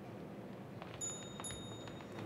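A small bell struck twice, about half a second apart, ringing faintly with clear high tones for about a second over quiet hall noise.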